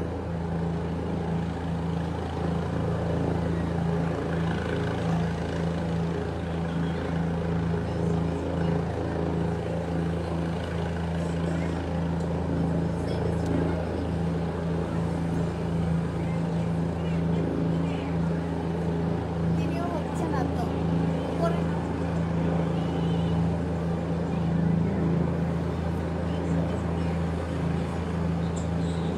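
Helicopter hovering close by, a steady low drone of rotor and engine.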